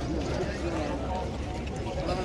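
Indistinct talk of a crowd of men: several voices overlapping at once, none clear.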